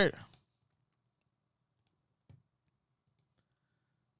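Near silence, broken by a single faint, sharp click about two seconds in.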